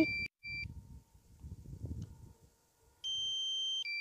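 Low-battery warning beeps from a DJI Mavic Air's remote controller: two short beeps at the start, then a longer, higher-pitched beep about three seconds in, and another beginning near the end. They sound because the drone's battery is critically low.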